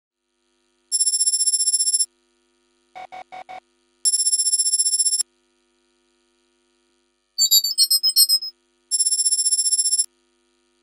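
Electronic computer-style sound effects: three loud ringing buzzes, each about a second long, near the start, in the middle and at the end. Between them come four short quick blips and a rapid run of jittery beeps, over a faint steady hum.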